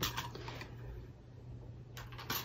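A few faint taps and handling noises, mostly near the start, over a low steady hum: a clear acrylic die-cutting plate and a plastic pick tool being lifted and moved on a wooden tabletop.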